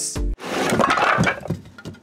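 Pieces of wood clattering and cracking together for about a second and a half, over background music.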